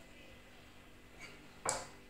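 A spoon scraping and knocking against a ceramic plate while scooping melted dark chocolate into a piping bag: a faint click, then one louder, short scrape near the end.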